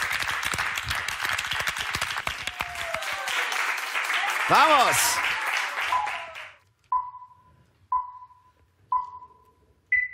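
A small group applauding and cheering with whoops, dying away about six and a half seconds in. Then three short beeps a second apart, followed by a fourth, higher beep: a countdown cue.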